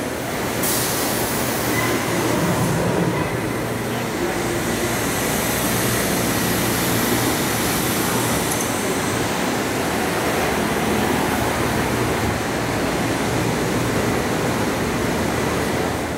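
Steady roar of water pouring from outlet pipes into a large indoor saltwater tank, mixed with the running of circulation machinery and a low hum.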